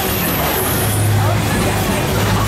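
Roller coaster car rolling along its track, with a steady low hum setting in about a second in.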